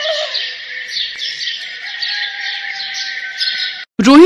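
Small birds chirping and twittering in a dense, steady chorus of high chirps that cuts off abruptly just before the end.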